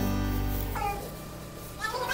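Background music with steady sustained tones, dipping quieter in the middle, with a falling sliding note about a second in and a rising one near the end.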